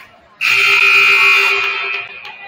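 Gymnasium scoreboard horn sounding one long, steady blast. It starts suddenly about half a second in and lasts about a second and a half.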